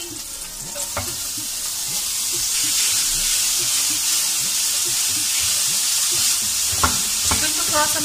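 Shredded boiled chicken sizzling in a frying pan of melted butter and fried ginger-garlic paste. The sizzle grows louder about two and a half seconds in as the chicken hits the hot butter, and a spatula stirs it with a few knocks against the pan.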